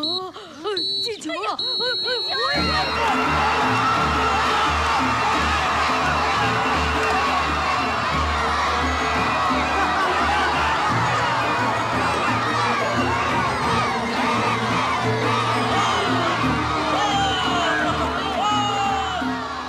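A referee's whistle blown three times, two short blasts then a longer one, the full-time signal. Then a crowd of adults and children cheering and shouting over film music.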